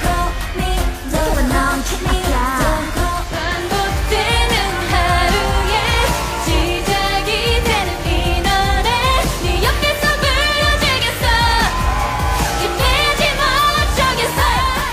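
K-pop girl-group stage music: female voices singing over a pop backing track with a steady beat. Partway through it cuts to a different song.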